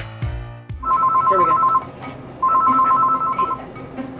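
Landline telephone ringing: two rings of about a second each, half a second apart, each a warbling two-tone electronic trill.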